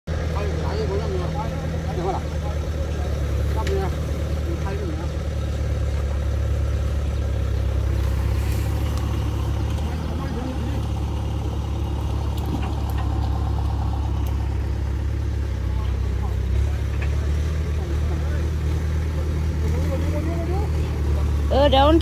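A heavy machine's engine running steadily, a low even rumble. A man shouts loudly near the end.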